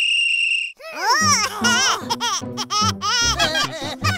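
A referee's whistle blown once, a single steady shrill blast of under a second. It is followed by high-pitched cartoon voices cheering and laughing over music with a regular beat.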